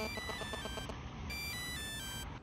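Mobile phone ringing with an electronic melody ringtone: two short phrases of clean beeping notes, each stepping downward in pitch.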